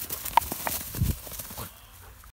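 Footsteps swishing and crunching through tall dry grass as short, irregular clicks and rustles, with a heavier low thud about a second in.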